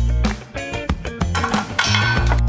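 Background instrumental music with plucked notes over a sustained bass line.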